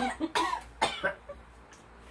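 A man coughing three times in quick succession with rough, voiced gasps, then a smaller cough: vinegar catching in his throat.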